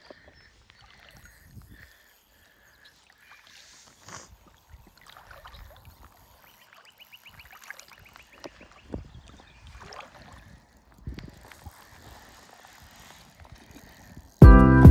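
Faint water sounds around a wader playing a trout on a fly rod, with scattered small splashes and knocks. About halfway through comes a short run of rapid, even clicks, the fly reel's click drag as line is wound in or taken out.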